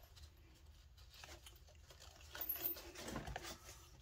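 Faint rustling and light clicks of nylon webbing strap being worked through the shoulder-harness rings and the plastic frame of a FILBE pack, a little louder in the middle and second half.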